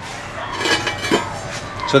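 A quarter-inch steel plate scraping and clinking as it is picked up off the concrete, with a short knock just past a second in.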